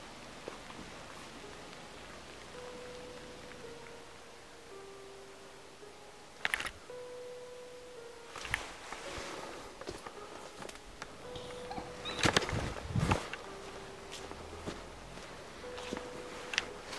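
Faint slow tune of held notes stepping up and down over a steady hiss, with a few sharp knocks and rustles from the handheld camera being moved or from footsteps, the loudest about twelve to thirteen seconds in.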